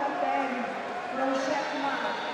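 Indistinct voices talking, overlapping in the echoing hall of a busy competition arena.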